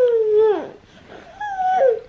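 A toddler vocalizing: two drawn-out wordless calls, the first longer, each held and then falling in pitch at its end.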